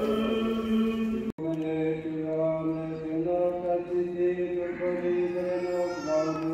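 Orthodox church chant: voices singing a slow melody in long held notes, one low note sustained beneath the moving line. The sound breaks off for an instant about a second in, then the chant carries on.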